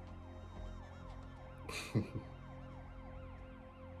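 Several emergency-vehicle sirens sounding together in a film soundtrack, their pitch sweeping up and down over and over in overlapping cycles above a low steady hum. A short sharp burst of noise cuts in about two seconds in.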